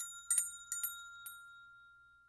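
Chime sound effect: a run of about five light, quick chime strikes in the first second or so, then one high note ringing on and fading away.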